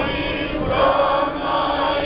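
Group of voices singing an Orthodox liturgical chant in long held notes.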